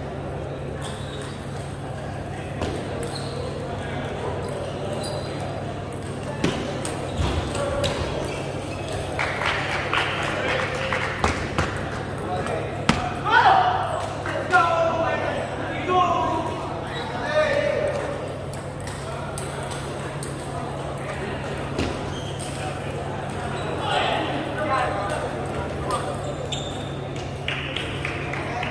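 Table tennis ball clicking sharply off bats and table in a short rally, then people's voices rising over it.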